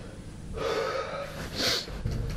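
A person breathing audibly: a long breath starting about half a second in, then a short, sharp breath near the end.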